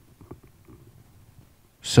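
A pause in a talk: low room rumble on a headset microphone with a couple of faint ticks, ending with a sharp inhale just before the speaker starts talking again.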